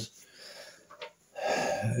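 A man's audible breath in a pause between sentences, with a small click about a second in, then his voice comes back with a drawn-out hesitation sound.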